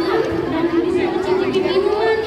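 Crowd chatter: many voices of children and adults talking at once, no single speaker clear.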